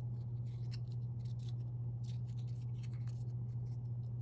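Fingers handling and turning a tiny cardboard toy box, giving scattered light scratchy ticks and taps. Under them runs a steady low hum, the loudest sound throughout.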